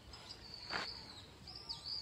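Birds calling with thin, high whistles, with a couple of falling notes near the end, and a single sharp knock about three-quarters of a second in.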